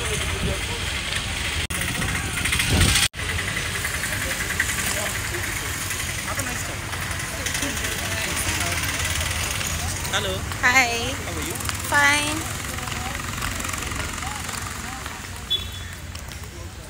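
Busy street ambience: a steady hum of traffic and crowd noise, dropping out for an instant twice early on, with a passer-by's voice calling out briefly about ten and twelve seconds in.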